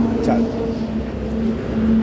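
Steady low mechanical hum holding one pitch over a noisy outdoor rumble, like an engine or motor running nearby.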